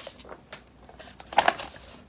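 Paper rustling and objects being handled on a desk as she studies, with two sharp knocks close together about one and a half seconds in.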